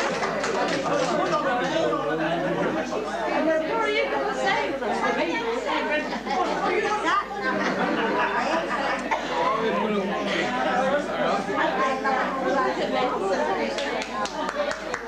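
Many people talking at once in a crowded room: steady, indistinct party chatter with no single voice standing out.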